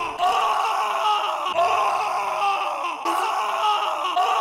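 A cartoon character screaming in long, wavering screams.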